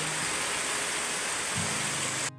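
Steady rain falling on a corrugated metal roof and the ground around it.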